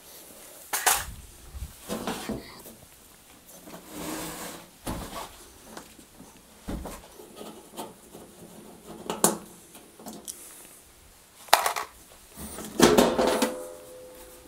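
A tumble dryer's casing being taken apart with a screwdriver: scattered clicks and knocks as screws are undone and tools and panels are handled, ending in a louder metallic clatter with a short ring as the sheet-metal top lid is lifted off.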